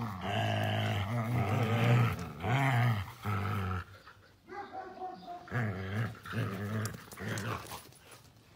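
Huskies growling in play during a tug-of-war over a stick: long, low growls that are loudest in the first four seconds, then softer and broken up.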